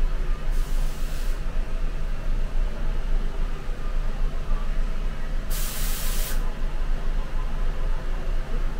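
Inside a stopped city bus: a steady low rumble from the bus, with two short hisses of compressed air from its air-brake system, one about half a second in and one about five and a half seconds in, each under a second long.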